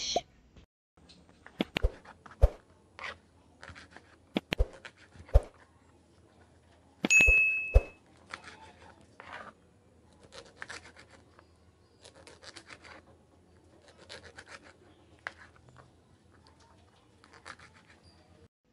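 Kitchen knife cutting calabresa sausage on a plastic cutting board: sharp taps of the blade striking the board, then a run of softer, regular slicing strokes. A brief high ring sounds about seven seconds in.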